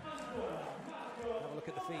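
Indoor volleyball rally: men's voices calling out over the court, with a couple of sharp ball hits, one near the start and one near the end.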